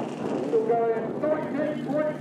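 Indistinct talking over a steady low background noise.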